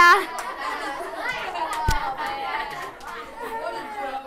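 Children laughing and chattering, loudest at the start, with one sharp knock about two seconds in.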